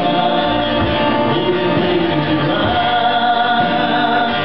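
A man singing a gospel song into a microphone to his own acoustic guitar, holding long notes.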